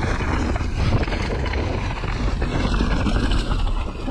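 Mountain bike rolling fast down a dirt singletrack: wind rushing over the handlebar-mounted camera's microphone, with the tyres on dirt and the bike rattling over small bumps.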